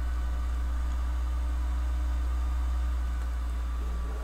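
A steady low hum with faint higher steady tones above it, and no speech.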